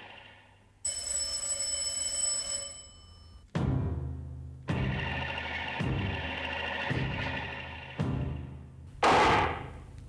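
An electric doorbell rings for about two seconds. Then music starts, with a heavy drum beat about once a second and a louder hit near the end.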